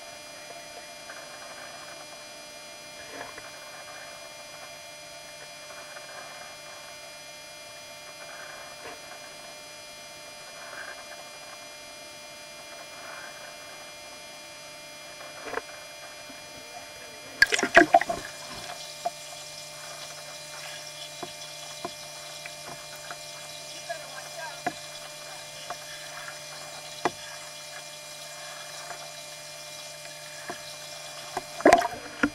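Swimming pool water lapping and splashing softly around swimmers over a steady hum. About two-thirds of the way through comes a short burst of louder splashing and knocks.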